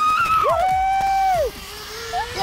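Zip-line riders whooping and yelling in excitement as they set off: a high held cry, then a lower long one of about a second that breaks off about a second and a half in.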